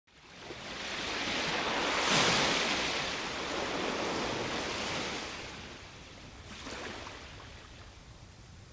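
Ocean waves washing onto a shore: the surf swells to its loudest about two seconds in, then recedes, with a smaller wave coming in near seven seconds.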